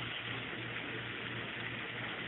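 Ground beef and red onion sizzling in a frying pan, a steady even hiss.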